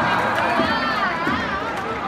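Baseball stadium crowd noise in a large domed arena, easing slightly after a cheer. About halfway through, one voice calls out over it with a pitch that rises and falls.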